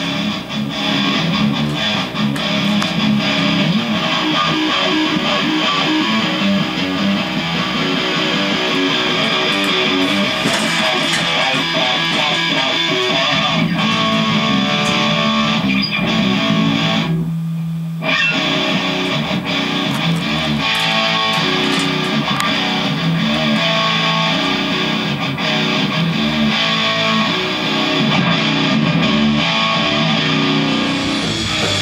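Heavy rock band playing: a distorted Ibanez RG seven-string electric guitar through a Cornford MK50 amp, with drums and cymbals. About seventeen seconds in the band stops for about a second, leaving one low note sustaining, then comes back in.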